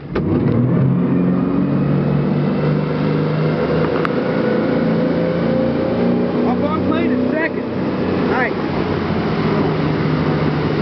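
Formula 27PC cruiser's twin sterndrive engines running the boat up to speed, a loud steady drone that edges slightly higher in pitch over the first few seconds, over the rush of wind and water. A few short voice sounds come between about two thirds and five sixths of the way in.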